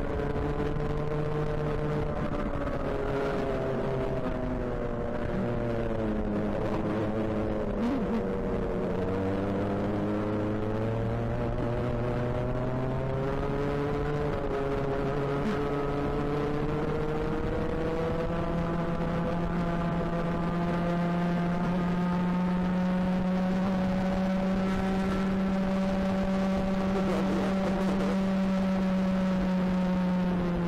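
Racing kart engine heard onboard at speed. Its pitch dips once, rises again as the kart accelerates, then holds a long steady high note before falling away near the end.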